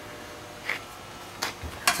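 Quiet room tone with two or three faint, short handling clicks and taps.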